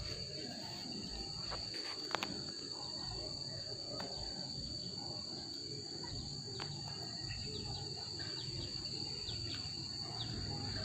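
Insects keep up a steady, high-pitched buzz, with a low rumble underneath and a few faint clicks.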